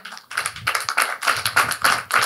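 Applause from a room of people: many hand claps in a dense, irregular patter that starts about a third of a second in.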